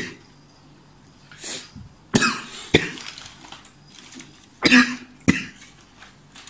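A man coughing in short, sudden fits, two pairs of coughs about half a second apart, the first pair about two seconds in and the second near the end.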